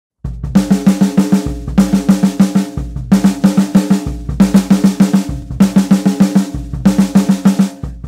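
Drum kit fill played over and over: each time a bass drum kick, then a quick run of strokes on the drums, about six rounds at a steady tempo, ending on a last bass drum hit near the end.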